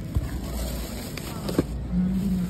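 Grocery packages being handled at a self-checkout: a sharp click just after the start and a short knock about a second and a half in, over a steady low hum.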